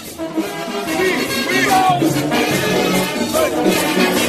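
Lively Latin-style music with maracas shaking out a steady beat and pitched parts gliding over it.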